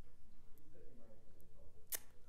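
Quiet room tone in a hall, with a faint voice in the background and one short, sharp click near the end.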